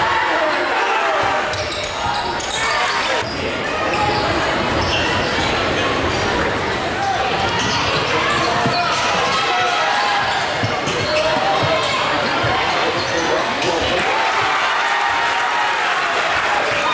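Basketball bouncing on a hardwood gym floor amid the steady, indistinct chatter of a crowd, echoing in a large gym.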